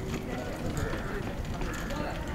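Ground crew voices talking over a steady low outdoor rumble.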